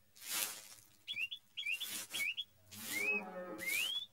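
Short hand broom sweeping a dirt yard: about five brisk scratchy strokes across packed earth. A series of short high chirps rises in pitch over the strokes, turning into longer rising calls near the end.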